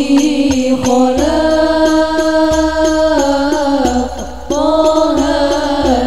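Chant-like devotional singing in long, drawn-out held notes that step from pitch to pitch, with light, regular percussion ticking underneath.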